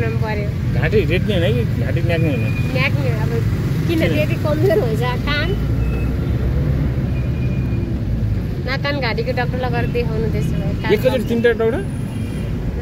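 Steady low rumble of a car on the move, with people's voices talking over it through the first few seconds and again near the end.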